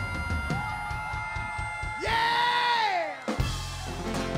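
Live country-rock band playing the end of a song: sustained chords and drums, with a loud held note that slides downward about halfway through, followed by a few sharp drum hits.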